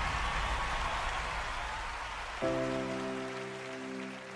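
Audience applause dying away, then a held keyboard chord starting suddenly about halfway through as the ballad's accompaniment begins.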